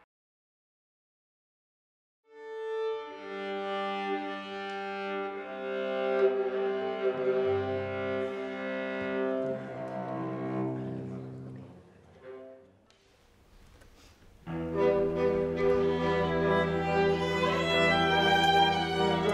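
Silence for about two seconds, then a string quartet plays slow, held chords that fade away past the middle. After a brief near-quiet gap, a string quartet starts again suddenly and louder, near the end.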